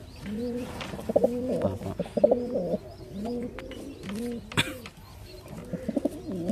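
Domestic pigeons cooing repeatedly in the loft, a run of low coos that rise and fall, with a few sharp clicks among them.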